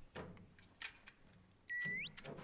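Faint clicks of a metal locker door being opened, then near the end a short high whistle tone that holds briefly and slides sharply upward: a comic sound effect.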